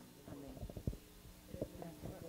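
A few soft, low thumps and faint murmured voices over a faint steady hum, with no music playing.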